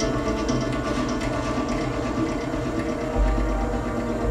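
Live electronic music: layered sustained drone tones with faint high ticks, and a deep bass tone coming in about three seconds in.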